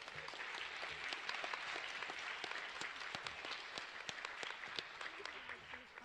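Audience applauding, a dense patter of clapping that thins out slightly near the end.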